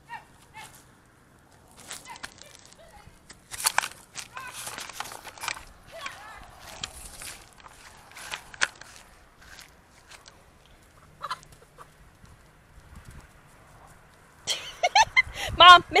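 Chickens clucking and squawking as they are shooed out of a vegetable garden, with knocks and rustling in between. A woman shouts near the end.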